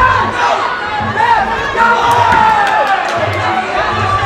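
Fight crowd and cornermen at a Muay Thai bout shouting and calling out, many voices overlapping.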